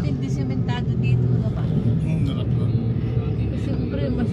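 A vehicle's engine running steadily while driving along: a continuous low hum, with brief snatches of voices over it.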